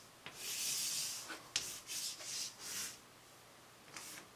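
Chalk drawing on a chalkboard: a run of scratchy strokes, with a couple of sharp taps of the chalk, over the first three seconds.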